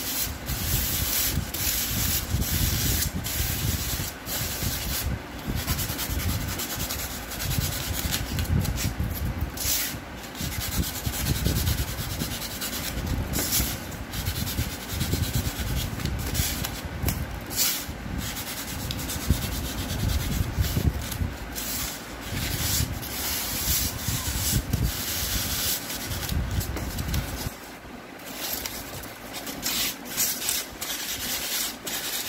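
Craft knife cutting and scoring a thermocol (expanded polystyrene foam) disc: continuous scratchy rubbing strokes of the blade through the foam. The strokes pause briefly near the end.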